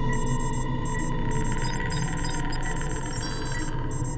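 Electronic synthesizer drone with a steady low hum and held tones, overlaid with short computer-style beeps and blips that repeat a few times a second.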